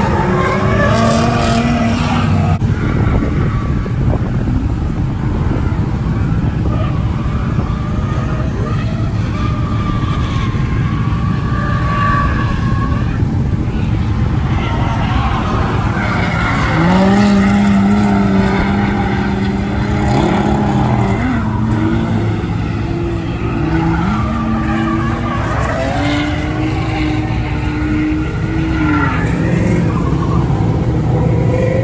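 Drift cars sliding through the course: engines held at high revs, their pitch jumping up and down in steps through the second half, over tyre squeal and skidding.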